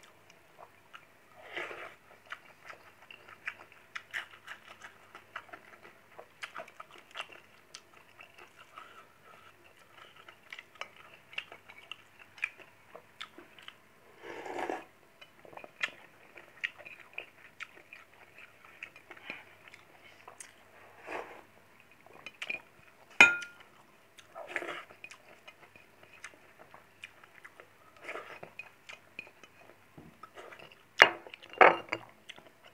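Close-up mouth sounds of a man eating a rice meal by hand: chewing, biting and small wet smacks and clicks, in no steady rhythm. About two-thirds of the way through, one sharp clink of a dish with a short ring.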